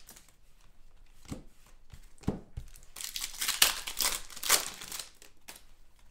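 Foil wrapper of a trading-card pack being torn open and crinkled by hand: a few sharp crackles at first, then a denser run of crinkling about halfway through.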